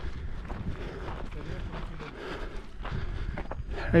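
Footsteps crunching irregularly on loose volcanic gravel and stones, with a low wind rumble on the microphone. A voice starts right at the end.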